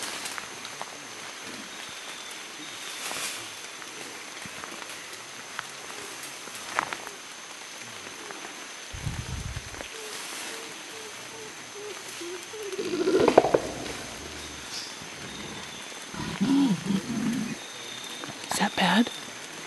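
Mountain gorilla beating its chest: a short, low drumming burst about nine seconds in, then a louder outburst a few seconds later.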